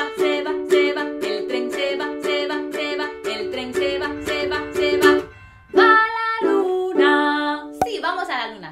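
Kala ukulele strummed in a quick, even rhythm of about four strokes a second, chords ringing. About five seconds in the strumming breaks off, followed by two longer held notes.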